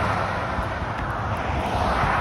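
Road traffic passing close by on an asphalt highway: a van's tyre and engine noise rushing past and fading, then swelling again near the end as an SUV goes by.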